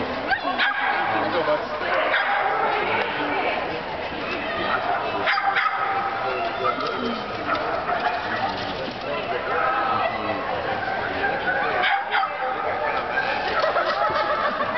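People talking, with a dog barking at times over the voices.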